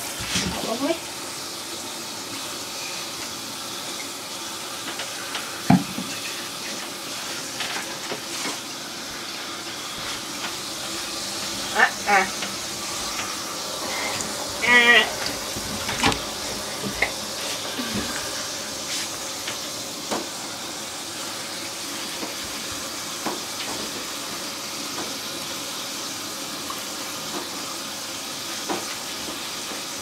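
Water from a handheld shower head running steadily into a shower tray and over a wet cat, a constant hiss. A sharp knock comes about six seconds in, and two short wavering cries come around twelve and fifteen seconds in.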